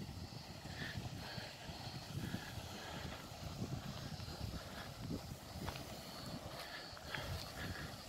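Faint sound of small waves washing onto a pebble shore, under a low, uneven rumble.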